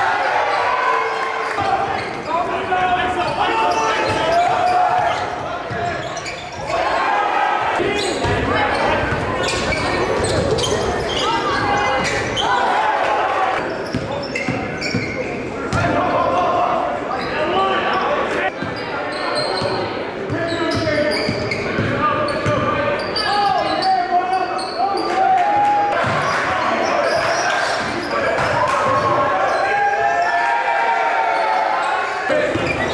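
Live game sound of indoor basketball: the ball bouncing on the hardwood court again and again, with players' and spectators' voices ringing in the gym.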